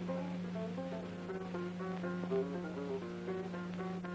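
Guitar music for a dance: a quick melody of short plucked notes, over a steady low hum.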